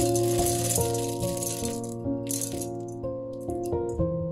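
Small solid pellets of soap-making fat poured into a glass bowl, rattling against the glass in a rush for about the first second and again briefly a little after two seconds. Background piano music plays throughout.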